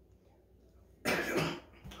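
A woman coughs once, about a second in.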